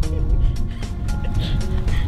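Background music: sustained, held notes over a heavy low bass.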